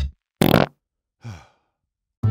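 A short, loud cartoon fart sound effect, followed about a second later by a quieter, fading breathy sigh of relief.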